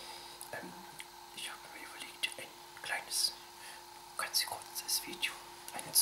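A man whispering in short breathy phrases, with a faint steady hum underneath.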